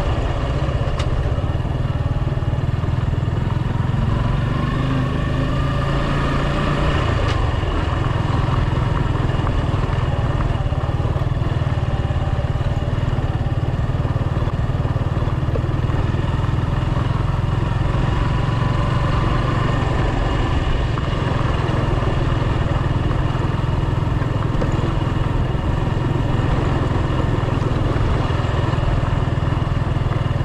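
Suzuki Gixxer's single-cylinder engine running steadily at low speed, heard from the rider's seat while riding a dirt track.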